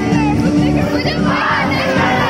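Live band music over a PA, with a crowd of audience voices close by shouting and singing along, the crowd growing louder about a second and a half in.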